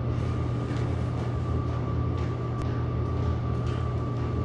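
Steady low room hum with a thin, faint high whine over it, and a few faint light taps and rustles.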